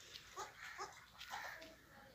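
Goat kids bleating faintly: three short calls, each falling in pitch.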